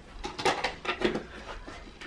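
A few light clicks and knocks of small objects being handled, bunched in the first second or so.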